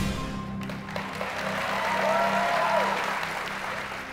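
Game-show suspense music holding a steady low tone under studio-audience applause, which swells about a second in and thins near the end.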